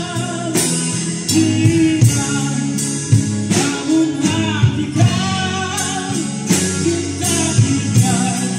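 A live band playing: a man singing into a microphone over a strummed acoustic guitar, electric guitar, bass guitar and drum kit, played through small amplifiers and PA speakers.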